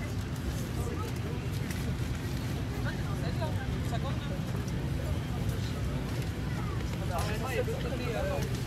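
Steady low rumble of an airliner cabin's air supply during boarding, with passengers' voices talking around it, one voice plainest near the end.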